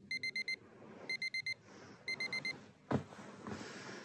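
Electronic alarm clock beeping in groups of four short high beeps, three groups about a second apart, going off to wake a sleeper. A sudden thump follows about three seconds in, then soft rustling of bedding.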